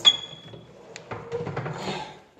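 A single sharp metallic clink that rings on briefly with a high tone, followed about a second later by scuffing noise.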